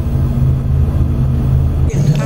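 Steady low hum of a spaceship's engines, a sound-effect background drone, which stops at a scene cut near the end.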